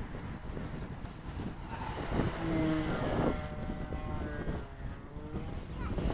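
Radio-controlled model plane's motor and propeller whining as it flies overhead, growing louder about two seconds in, with wind buffeting the microphone.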